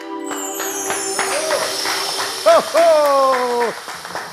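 The last held note of a folk song dies away under audience applause, and a voice calls out twice over the clapping, the second time in one long, slightly falling shout.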